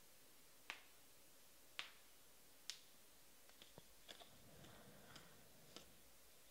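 Faint snaps of trading cards being flicked through one by one in the hands: three sharp snaps about a second apart, then lighter ticks and a soft rustle of cards sliding over one another.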